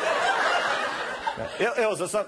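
Live audience laughing after a joke, dying down about a second and a half in as a man's voice comes back.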